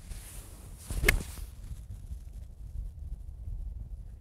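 Golf club swishing through a swing and striking the golf ball with one sharp click about a second in.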